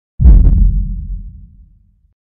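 A deep bass boom sound effect for an animated logo intro. It hits suddenly about a fifth of a second in and dies away over about a second and a half.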